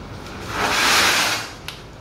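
One long swishing stroke, about a second long, of an applicator spreading liquid wall primer over rough plaster.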